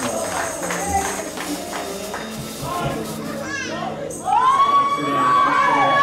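Church praise music with voices singing and calling out and a tambourine. About four seconds in it grows louder as a voice holds one long high note.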